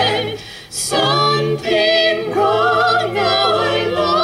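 Mixed a cappella vocal group singing in close harmony, a low bass line under held chords, with a brief dip about half a second in.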